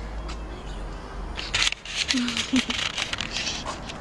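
Close rustling and handling noise as a cat is held and carried against the camera, with a couple of brief murmured voice sounds about halfway through.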